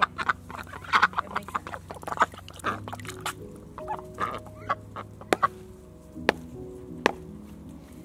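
Domestic ducks quacking and chattering in short bursts, busiest in the first half, with a few sharp clicks later on. Soft background music with held notes plays underneath.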